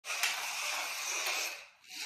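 Toy slot cars' small electric motors running on the track, a steady whir with a couple of light clicks, fading out about one and a half seconds in.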